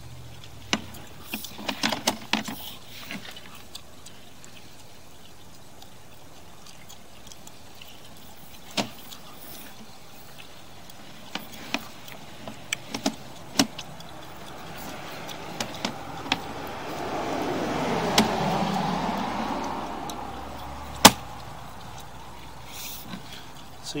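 Scattered light clicks and knocks as a sewer camera's push cable is fed into the line. Midway a passing car swells and fades over about six seconds, and one sharp click comes near the end.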